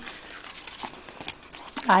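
Faint soft taps and light clicks of a handmade paper-and-card album page being handled and turned in the hands, a few scattered strokes; a woman's voice comes in near the end.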